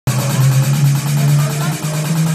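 Loud electronic dance music played over a club sound system, led by a deep, sustained bass note that dips briefly near the end, with voices mixed in.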